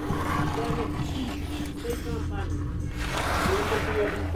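People grunting and straining with effort as they heave a fat-tyred handcycle over rocks, over a steady low rumble.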